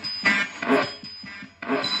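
Spirit box radio scanner sweeping through stations: short choppy bursts of static and clipped scraps of broadcast sound, a few per second, with a thin high whistle running under them.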